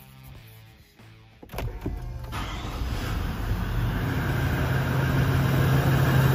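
Lexus LX 450d's V8 D-4D twin-turbo diesel starting about a second and a half in, with its EGR and particulate filter deleted. It builds up over a couple of seconds and then settles into a steady idle, heard from inside the cabin.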